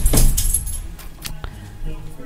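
A short burst of clinking, jangling noise, loudest in the first half second, followed by a few faint clicks.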